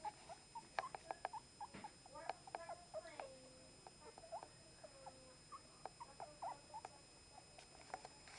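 Chihuahua puppies squeaking and whining: many short, high-pitched calls scattered throughout, some sliding down in pitch, with a few faint clicks between them.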